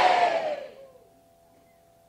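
Church congregation shouting 'amén' together in answer to the preacher's call, a loud crowd response that dies away within the first second, followed by quiet.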